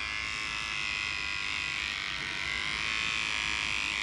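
Battery-powered electric hair trimmer running with a steady, high buzz while it is worked along the hairline in a line-up.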